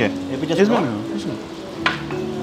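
A serving plate set down on a glass table-top, one short clink near the end, over a steady hiss.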